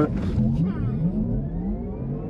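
Porsche Taycan Turbo's electric drivetrain under a full launch-control start, heard from inside the cabin: a thin whine climbing steadily in pitch over road rumble as the car accelerates hard.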